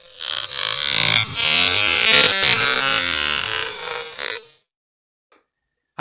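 Electronic intro sting over the channel's logo card: a loud, dense, noisy sound with wavering tones that fades and stops about four and a half seconds in.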